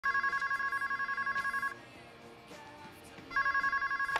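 Electronic ringer of a cordless telephone ringing: a rapid warbling trill between two high tones, one ring of about a second and a half, a pause, then the next ring starting near the end.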